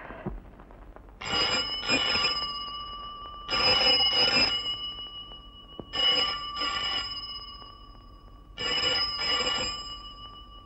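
A desk telephone's bell ringing, four rings spaced about two and a half seconds apart, each ring a double burst lasting about a second and a half.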